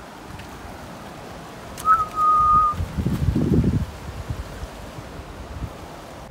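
A single steady whistled note, held just under a second, about two seconds in. It is followed by a short, loud burst of wind buffeting the microphone.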